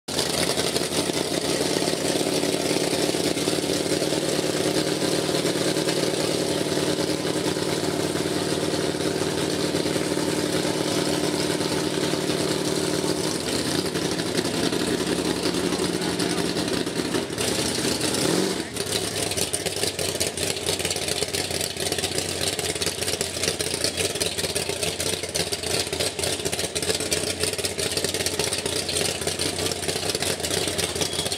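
Mud-bog buggy's engine idling steadily at the start line, its pitch dropping away a little past halfway through before it runs on rougher and less even.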